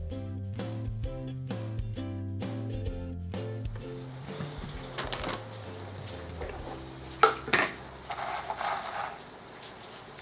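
Background music for the first few seconds, then a hot, freshly baked rice casserole sizzling in its baking tray, with a few sharp knocks of the tray and kitchen things being handled.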